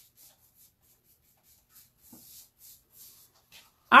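Faint, soft rustling and scratching handling noise in a string of short scrapes, with a word of speech right at the end.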